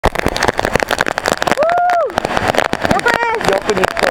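Heavy rain, with drops striking the camera microphone as a dense, constant crackle. Over it a person gives one drawn-out shout about a second and a half in, and voices call out again near three seconds.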